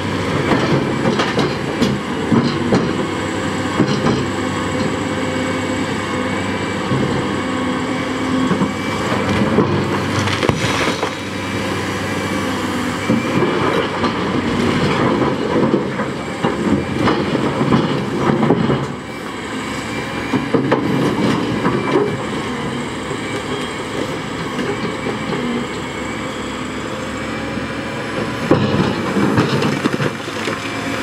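Liebherr R980 SME crawler excavator's diesel engine running steadily under load as its steel bucket digs and scrapes through a pile of limestone rocks, with rocks clattering and knocking against the bucket and each other throughout.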